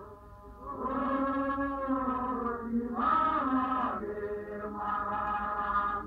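A group of voices singing in long, held, chant-like notes, coming in about two-thirds of a second in. The sound is thin and muffled, as from an old recording.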